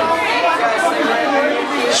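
Crowd chatter: many people talking over one another at once.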